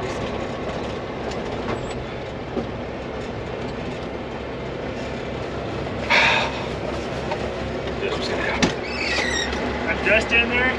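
A semi truck's diesel engine idling steadily, heard from inside the cab. A brief, loud rush of noise comes about six seconds in.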